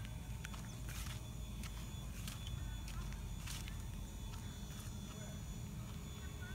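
Footsteps on an asphalt road: faint, irregular scuffs and taps over a steady low rumble.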